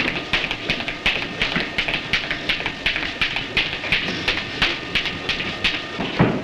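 A boxer's training in a gym: a fast, steady run of sharp taps, about four a second.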